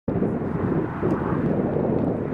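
Wind buffeting the microphone: a steady, uneven low rumble with no pitched tone.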